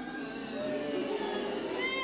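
Many children's voices calling out together from a pantomime audience in long, drawn-out cries that build near the end.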